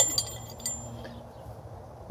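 Light metallic clinks and a short high ring from handling a steel eye bolt with its washer and nut, dying away within the first second.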